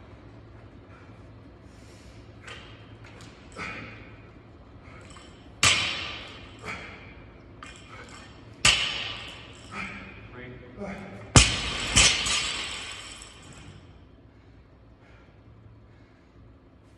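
A barbell loaded with bumper plates hitting a rubber gym floor four times, each impact followed by a short rattle of bar and plates. The loudest pair of drops comes about two thirds of the way through. Heavy breathing or grunting is heard between them.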